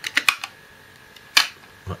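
Hard plastic clicks from a 1987 M.A.S.K. Buzzard toy car being handled: a quick cluster of small clicks at the start, then one sharp snap about one and a half seconds in as its cockpit canopy is pressed shut.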